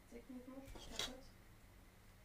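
A faint, low murmured voice for about the first second, with one short sharp click about a second in.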